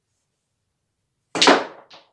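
A pool shot on a mini pool table: a single loud, sharp knock about a second and a half in, fading quickly, then a smaller click just before the end.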